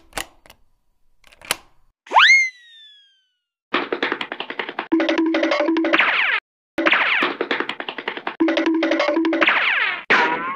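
Edited-in cartoon sound effects: a few sharp clicks, then a springy boing that shoots up in pitch and slides down about two seconds in. From about four seconds in comes a fast clattering effect over a pulsing low tone, broken by a short gap.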